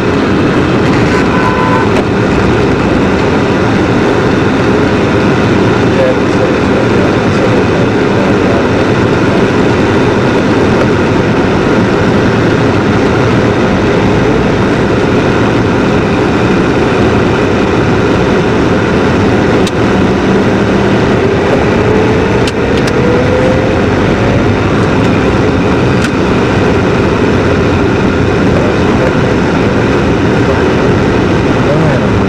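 Steady road and engine noise inside a moving car's cabin, with a brief rising whine about two-thirds of the way through.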